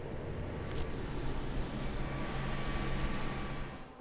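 Steady whirring of a desktop computer's cooling fans with a low hum, the machine running under load while plotting Chia in parallel.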